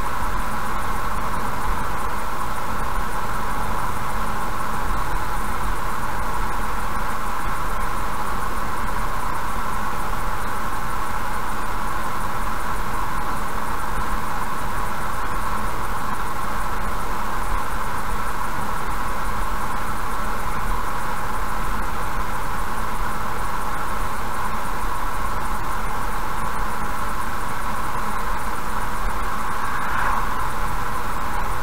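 Steady road noise of a car cruising at about 75 km/h, tyre and engine sound as picked up by a dashcam, even and unchanging throughout.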